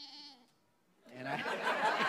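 A young lamb gives one short bleat, then people break into laughter about a second later.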